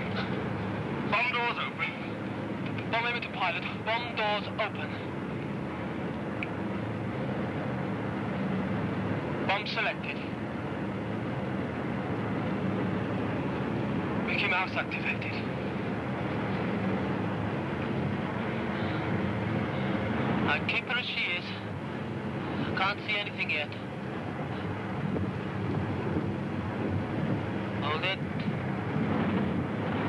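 Steady drone of a World War II heavy bomber's piston engines, heard from inside the aircraft, with short bursts of voice over it every few seconds.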